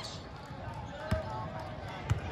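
Basketball game in a gym: a steady murmur of indistinct voices, with one basketball thudding on the hardwood floor about a second in.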